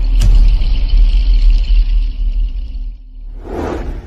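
Logo-intro sound effects: a loud, deep bass rumble with a thin high shimmer over it, fading out about three seconds in, then a short whoosh near the end.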